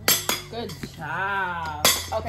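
Metal rods from a flat-packed toy organizer clinking together as a toddler handles them, with a sharp clink at the start and another near the end. A toddler's voice calls out in between, rising then falling.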